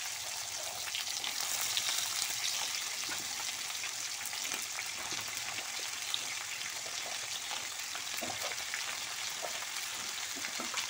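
Brinjal (eggplant) pieces frying in hot oil in a wok: a steady sizzle with scattered crackles. A metal spatula stirs and turns the pieces now and then, with a few sharper clicks.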